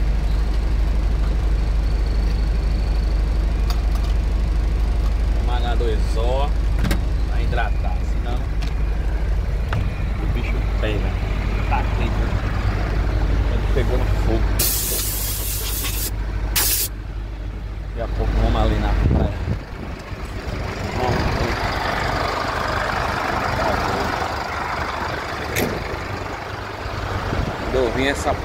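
A truck's diesel engine rumbling steadily, then a loud burst of air hiss lasting about a second and a half and a short second hiss: the air brakes being set. The engine rumble cuts off a few seconds later.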